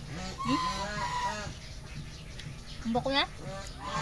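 Farmyard chickens clucking and calling: a run of short arching calls in the first second and a half, then a sharper rising call about three seconds in.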